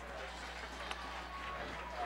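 Faint stadium background during a lull in the commentary: a low, even wash of distant crowd and field noise over a steady electrical hum.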